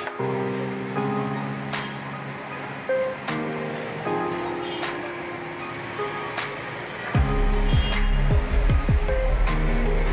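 Background music with held chords. About seven seconds in, a deep bass with quick falling slides comes in and the music gets louder.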